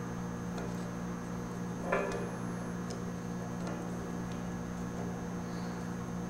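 A steady low hum with a few faint small metal clicks from hand tools working on a clamped steel go-kart spindle, and one slightly louder clink about two seconds in.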